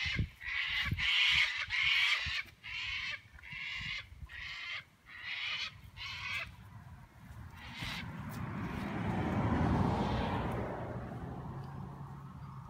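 A bird calling over and over in short, pitched calls, about one a second, for the first six seconds or so. In the second half a rushing noise swells and then fades.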